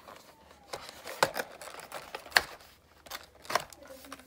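A small cosmetics case being handled and worked open by hand: a few sharp clicks and taps amid light rustling of packaging.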